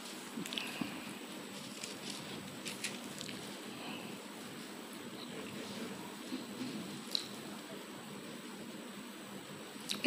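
Quiet room tone with a few faint, brief clicks and rustles.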